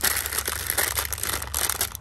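Clear plastic bag wrapping a clutch throw-out bearing crinkling irregularly as it is handled, over a steady low hum.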